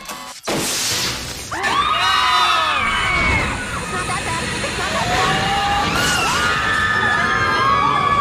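Several voices screaming together, overlapping and sliding up and down in pitch, after a sudden loud crash about half a second in.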